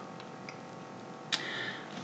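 Quiet pause in speech: faint steady microphone hiss, with a small tick about half a second in and a short, sharper click-like sound near the end.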